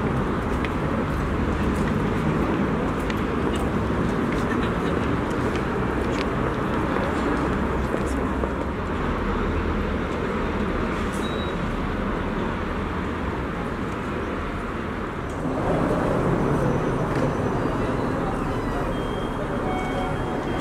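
City street ambience: road traffic running steadily past, mixed with indistinct voices of passersby. The mix shifts about fifteen seconds in.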